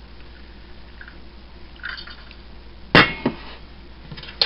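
Boiling water being poured from a glass measuring jug into a ceramic mug over a tea bag, a faint, even trickle. About three seconds in comes a sharp clack, followed by a lighter one.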